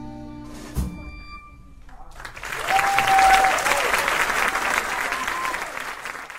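A jazz quintet's final chord rings out and fades, with one last drum hit about a second in. From about two seconds in, a live audience applauds loudly, with a few calls and whistles over the clapping.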